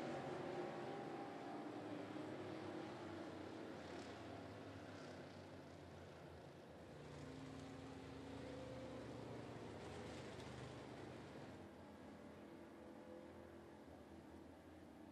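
Limited late model dirt-track race cars' V8 engines heard faintly, their pitch drifting up and down as the field runs slowed under a caution.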